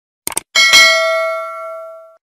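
A quick mouse-click sound effect, then a single notification-bell ding that rings with several tones at once and slowly fades out.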